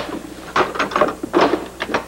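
Clicks and knocks of a portable cassette player being handled and its keys pressed.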